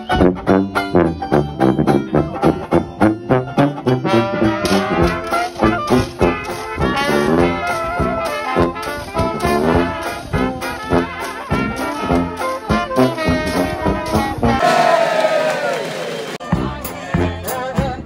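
Traditional Dixieland street band playing a lively tune, with banjo strumming and bass drum keeping the beat under sousaphone, trumpet, trombone and clarinet. The music jumps abruptly between passages near the end.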